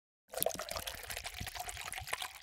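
Liquid pouring, starting suddenly a moment in after silence, with a dense crackle of small splashes.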